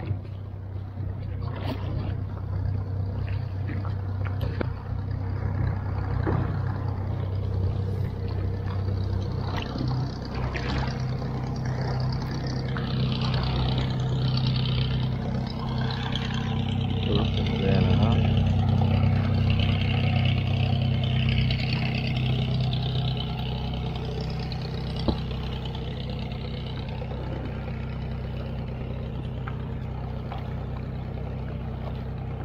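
Small fishing boat's engine running steadily at low speed, with water rushing and splashing along the hull. The engine note rises slightly about a third of the way in and eases again later.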